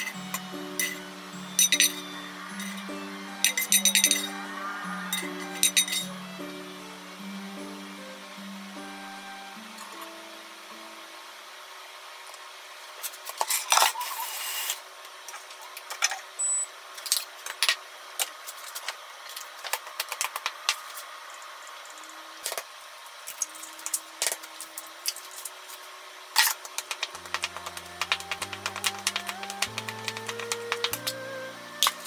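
Gentle background music with kitchen sounds over it: a wooden spatula scraping and knocking on a frying pan, and utensils clinking. The music stops about eleven seconds in, leaving scattered clinks and a short noisy scrape near the middle. It comes back near the end, when a wooden spatula clatters quickly in a stainless steel bowl, mixing egg into rice.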